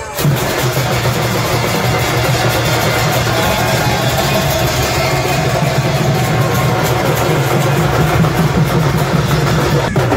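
Loud, dense procession band drumming on rack-mounted drums with cymbal crashes, the strikes packed close together in a continuous din.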